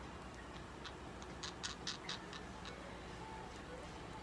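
Budgerigar pecking and cracking seeds from a hand: a quick run of about eight small, sharp clicks from its beak, starting about a second in and stopping before the three-second mark.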